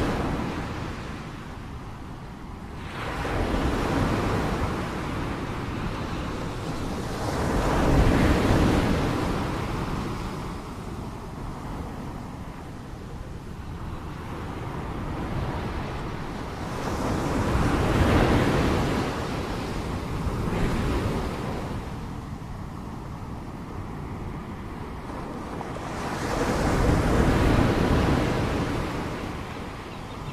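Ocean surf breaking and washing up on a sandy beach, rising and falling in slow surges every several seconds.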